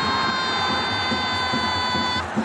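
A horn holds one long, steady, loud note over stadium crowd noise during a goal celebration. The note cuts off just after the two seconds.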